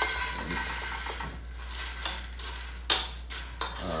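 Kitchen handling noises: a steady hiss with clinks of dishes and utensils, and one sharp clink about three seconds in, the loudest sound.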